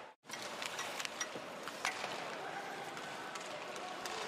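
Ice hockey arena sound during play: a steady crowd hum with scattered sharp clicks of sticks and puck on the ice, cutting in after a split-second gap.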